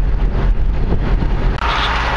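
Car interior noise while driving: a steady low engine and road rumble from inside the cabin. Near the end a brighter hiss comes in.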